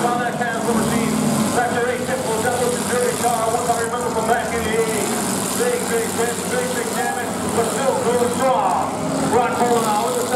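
Demolition derby cars' engines running steadily in the arena, under a continuous babble of crowd voices.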